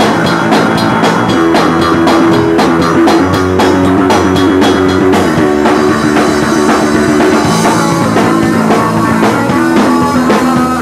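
Live rock band playing loudly: guitar chords over a drum kit keeping a steady, regular beat.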